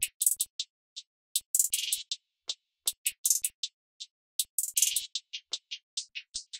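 Programmed hi-hat and percussion loop playing dry, with no effects on it: short, bright ticks and hits in an uneven, syncopated pattern with silent gaps between them.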